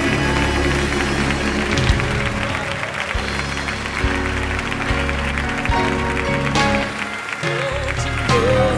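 Live gospel band music with held chords and a few drum hits, the audience clapping along.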